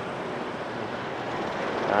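Steady street traffic noise from motorbikes on a busy city road, an even hiss that swells slightly near the end.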